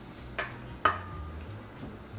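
A metal fork set down on a wooden cutting board with two light clinks about half a second apart, the second ringing briefly.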